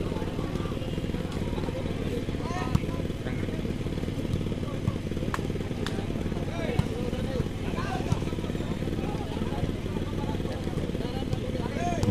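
Volleyball rally ambience: a steady low hum with faint crowd chatter, and a few sharp slaps of the ball being struck, the loudest about three seconds in.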